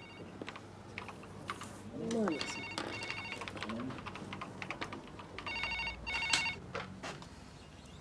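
Desk telephone ringing, two rings about three seconds apart, with faint voices and light clicks behind it.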